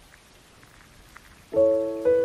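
Light rain falling on a surface, a faint steady patter with scattered drop ticks. About one and a half seconds in, a loud sustained keyboard chord of several notes enters suddenly and begins to fade.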